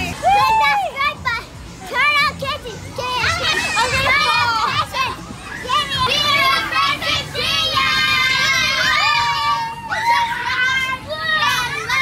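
Children shouting and squealing as they play in an inflatable bounce house, with a long, high scream about eight seconds in.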